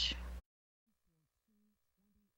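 A steady low hum under the last syllable of a woman's voice, cut off abruptly less than half a second in. Near silence follows.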